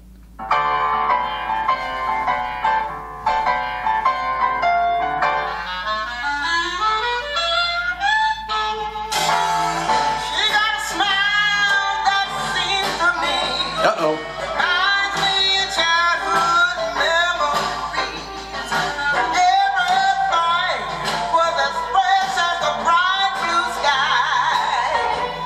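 New Orleans-style jazz band with piano, horns, upright bass and drums starting up, with a rising glide about seven seconds in. From about nine seconds a woman sings with a wavering vibrato over the band.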